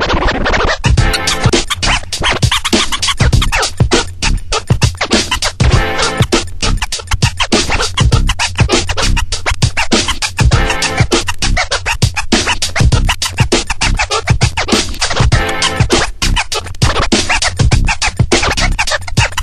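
DJ scratching a record on a turntable over an electronic hip-hop beat with a steady bass. A pitched sample returns about every five seconds.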